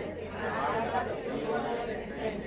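Indistinct speech, with voices talking below the level of the main lecture voice.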